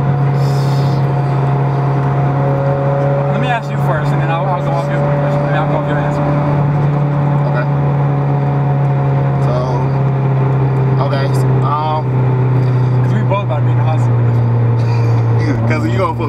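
Car engine and road noise heard inside the cabin while driving: a steady, loud low drone with a few steady higher tones that sag slightly near the end.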